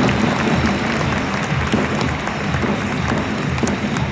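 Stadium crowd applauding in a domed baseball park, over music played through the public-address system.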